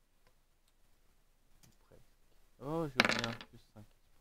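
A few faint clicks, then about two and a half seconds in a man's brief wordless vocal sound: a voiced 'hmm' that rises and falls in pitch, running straight into a short breathy, noisy burst.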